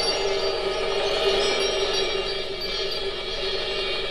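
A live stage-show orchestra holds a sustained chord under a cymbal wash, slowly dying away.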